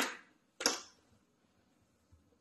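Two sharp clicks or knocks about two-thirds of a second apart from hand work at the underside of a sink garbage disposal, each fading quickly; the motor is not running.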